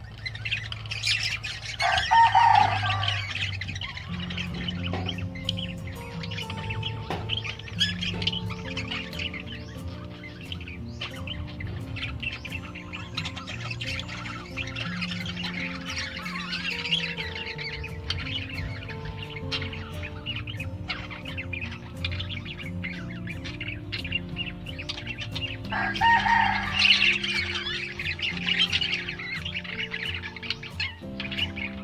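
A flock of budgerigars chattering and chirping throughout, loudest in a burst near the start and again near the end, over background music.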